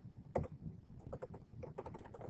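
Computer keyboard typing: one sharper key-press about a third of a second in, then a quick run of about six or seven keystrokes in the second half.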